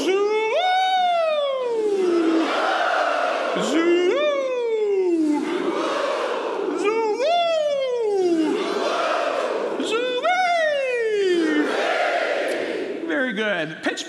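A male vocal coach sings a gliding "joui" that swoops up and then slides down in pitch, and a large group of singers echoes each one in unison. There are four calls, each answered, and speech begins just at the end.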